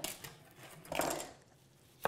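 Soft handling noises at a wooden chopping board as a mushroom and kitchen knife are picked up and set down: a brief knock at the start and a short scuffing sound about a second in.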